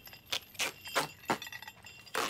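Metal chains clinking: several sharp, separate clinks a few tenths of a second apart.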